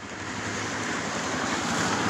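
Steady road, wind and engine noise inside a moving Toyota car's cabin, fading in at the start.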